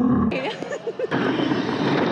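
A woman's loud, low growl cut off abruptly, then brief wavering vocal sounds and, from about a second in, a steady rushing noise from the ride vehicle of a dark indoor roller-coaster ride.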